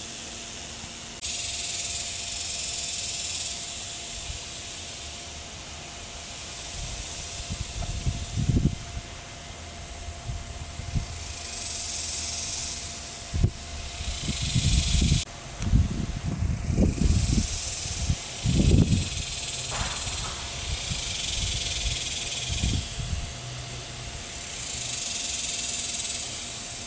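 High, hissing insect buzzing that swells and cuts off in surges lasting a few seconds each. Low, irregular rumbles on the microphone come through the middle.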